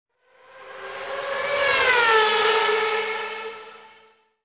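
A fast engine sweeping past: its steady note swells up over about two seconds, drops in pitch as it goes by, and fades away near the end.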